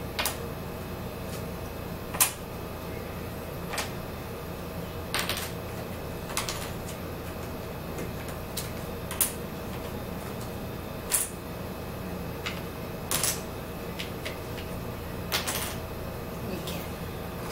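Small hard puzzle pieces tapping and clicking on a wooden tabletop as they are set down and moved: about a dozen irregular taps, some in quick pairs, over a steady low room hum.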